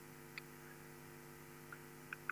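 Near silence with a faint, steady electrical mains hum and a faint tick about half a second in.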